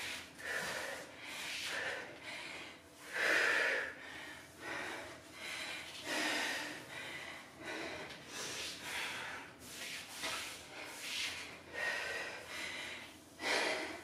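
A woman breathing hard from exertion during a bodyweight workout, with quick, noisy exhales coming about once a second; the strongest is about three seconds in.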